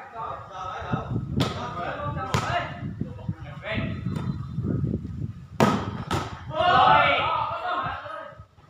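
A volleyball being struck by players' hands and forearms in a rally: four sharp smacks in two pairs, the second pair the loudest, with players' shouts between and after the hits.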